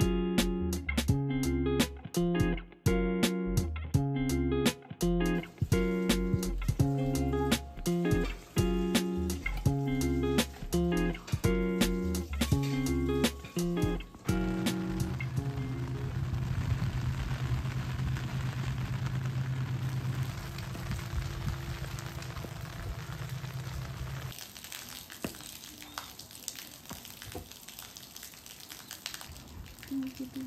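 Background music of plucked notes for roughly the first half. The music then gives way to a steady hiss of rain, with a low steady hum beneath it until the rain quietens a few seconds before the end.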